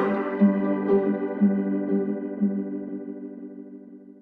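Closing chord of a deep house track: a sustained electronic keyboard chord with a soft pulse about twice a second and no drums or bass, fading out steadily.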